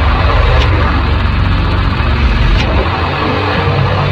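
Doom/sludge metal recording: heavily distorted, bass-heavy guitar and bass drone under slow drum hits about every two seconds.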